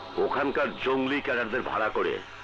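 Speech only: a man talking, over a faint steady low hum.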